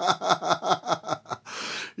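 A man laughing, a quick run of 'ha' pulses about five a second that fades out, then a short sharp breath in near the end.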